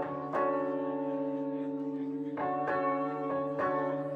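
Live music from electric guitar and synthesizer keyboard: a sustained chord rings on, with bell-like notes struck four times.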